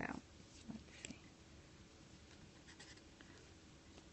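Faint scratching of a pen writing on paper in a few short strokes, in near silence. A brief soft rustle comes at the very start.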